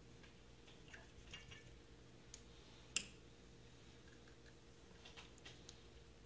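Paintbrushes being put down and picked up: a few faint taps and ticks, with one sharp click about three seconds in, over a low steady electrical hum.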